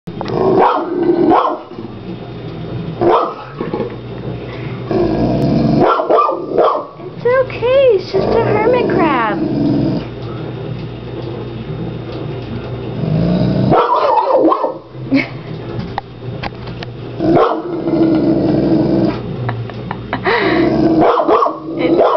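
French mastiff (Dogue de Bordeaux) barking in loud bursts a few seconds apart, growling in between.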